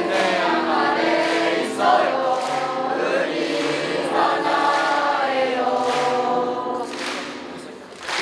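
Background music of a choir singing in long held notes, fading briefly near the end.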